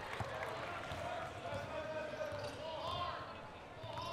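Basketball game sounds in a gym: a steady murmur of crowd voices with a ball bouncing on the hardwood court.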